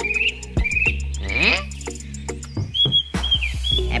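A string of short rising chirps, then one long whistle sliding upward about a second and a half in, and a few short level whistle notes near the end, all over a steady low hum.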